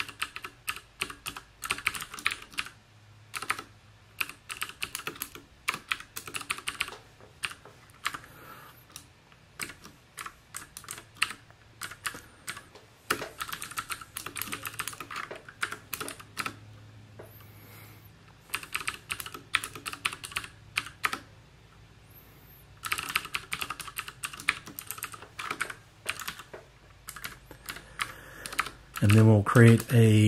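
Typing on a computer keyboard: quick bursts of keystrokes broken by short pauses.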